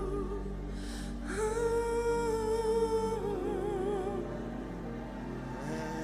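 Slow worship music: a singer holds long wavering notes, one ending early on and another from about a second in to about four seconds. Under the voice, a sustained keyboard-pad chord plays.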